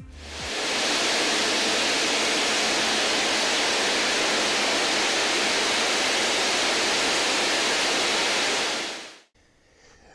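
Jet engine running on a test stand while water is sprayed into it in a water-ingestion test: a steady, even rushing noise, strongest in the upper range. It fades in over the first second and fades out about a second before the end.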